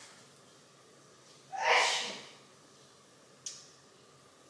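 A girl's short, loud breathy vocal burst about a second and a half in, then a single sharp click near the end.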